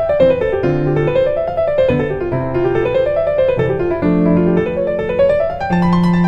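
Background piano music: runs of notes climbing and falling, repeating every second or two, over held low notes.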